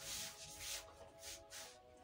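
Printed fabric rustling as it is handled and folded on a table, in four short swishes, the first the loudest, over faint background music with steady held notes.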